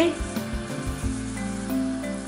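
Oil, vinegar and water sizzling steadily in an earthenware cazuela on the heat, under background music with held notes.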